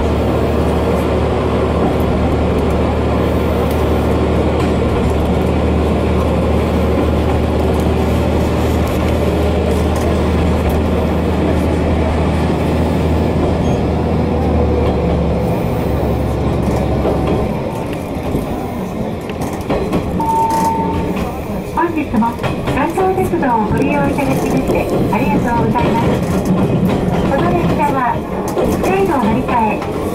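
Jōsō Line diesel railcar running, heard from inside the carriage: a strong, steady low engine hum that drops away about seventeen seconds in as the engine eases off. It is followed by quieter running with scattered rail clicks.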